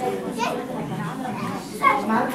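Chatter of several young children's voices overlapping in a large hall.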